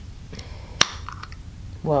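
Screw-top lid of a glass food jar being twisted open, with one sharp click a little under a second in as the lid breaks loose.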